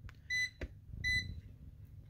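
Clamp multimeter giving two short, high electronic beeps about two-thirds of a second apart, as its probes read about 30 volts AC between the thermostat's R and common terminals. Faint clicks of the probes being handled.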